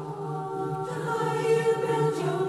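Background choral music: voices singing long held notes over a low sustained note, with a new chord swelling in about a second in.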